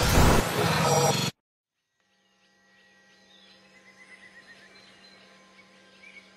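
Loud rush of water splashing against a camera at the sea's surface, cut off suddenly a little over a second in. After a second of silence, faint music swells in with high chirping sounds.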